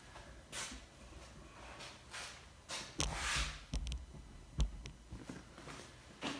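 Handling noise from a phone camera being carried and set down: soft rustles, then a few knocks and thumps about halfway through.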